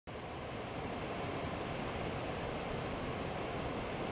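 Steady low rumble of background noise, with faint short high chirps repeating about twice a second from about two seconds in.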